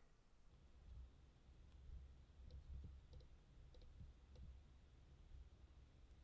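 Near silence with a few faint, short clicks from a computer mouse, some coming in quick pairs, while the eraser tool is dragged over an image.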